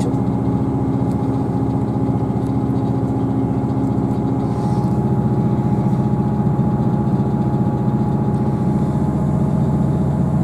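Underfloor diesel engine of a Class 158 diesel multiple unit running steadily while the train is under way, heard from inside the passenger saloon. About halfway through, the engine note shifts and grows slightly louder.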